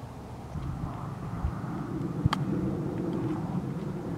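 One sharp click of a golf club striking a ball a little over two seconds in, over a steady low outdoor rumble.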